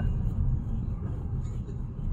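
Steady low rumble of a car driving, road and engine noise heard from inside the cabin.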